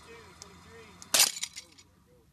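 A rope under heavy tension snaps at about 2424 lbs of pull. There is one loud, sharp crack a little past the middle, followed by a short clatter that dies away within about half a second.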